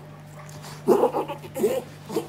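Norwich terrier making short, strained pitched noises in two bursts, about a second in and again near the end. It is an attack that the owner feared was a seizure, of the kind known as reverse sneezing.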